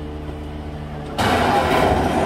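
Refuse truck's diesel engine running steadily, then a little over a second in a loud creaking starts from the crane as it works the lifted underground waste container. The creak sounds dry, the kind that calls for a spray of WD-40.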